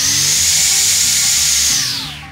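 Osuka OCBC 511 cordless brushcutter's brushless electric motor spinning its toothed metal blade with no load at the lowest speed setting (about 4300 RPM). It makes a steady high whine with a rush of air, which falls away near the end as the motor stops.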